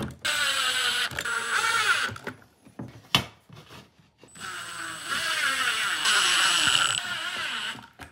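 Cordless drill/driver running twice, for about two seconds and then for about three and a half, as it drives screws through metal shelf brackets into a suitcase shell. Its pitch wavers as the motor loads. A single sharp knock comes between the two runs.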